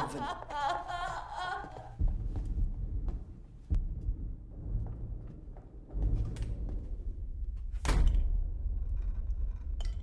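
A woman sobbing for the first two seconds, then deep booming thuds and rumbles several times, the loudest near the end: distant shelling heard inside an underground bunker, which sounds almost like thunder.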